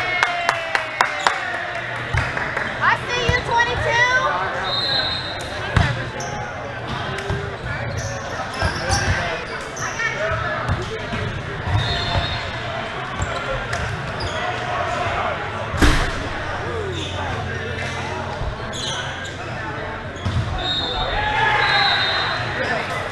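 Volleyball play in a large, echoing gym: the ball being struck and bouncing, with players' voices calling out. One loud ball hit comes about sixteen seconds in.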